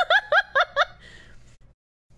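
A woman giggling: a quick string of about five short giggles in the first second, trailing off, then a brief dropout to total silence near the end.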